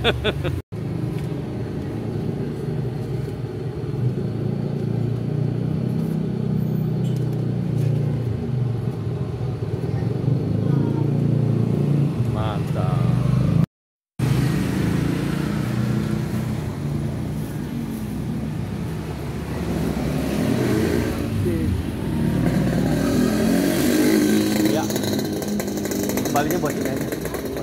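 Motorcycle traffic on a street: a steady low engine rumble with bikes going by, cut off briefly about halfway.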